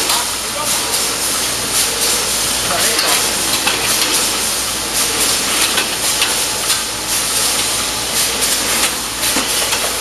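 Packaging-line machinery running: a loud, dense hiss with a rapid, irregular clatter of small clicks throughout.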